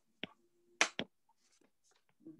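Stylus tapping and clicking on a tablet's glass screen while handwriting: three sharp clicks in the first second, then a few fainter ticks.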